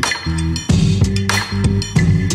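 Background music with a steady beat: held bass notes and sharp, bright percussive hits.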